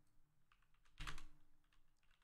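Rapid, faint keystrokes on a computer keyboard, a quick run of clicks that grows louder about a second in.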